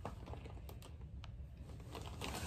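Faint room noise with a few light, sharp clicks and taps scattered through it.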